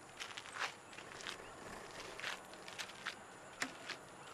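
Quiet, unhurried footsteps of a man pacing: about eight soft, irregularly spaced steps over a faint steady outdoor hiss.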